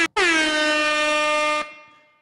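Air horn sound effect: a last short blast of a rapid stutter, then one long blast whose pitch dips at the start and then holds, cut off about one and a half seconds in with a brief fading tail.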